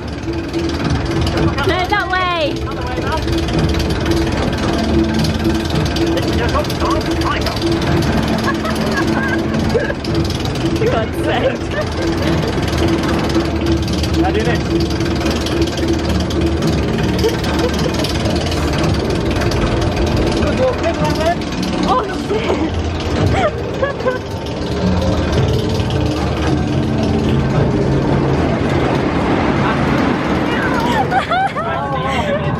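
Indistinct chatter of many people over a steady low hum, with some music mixed in.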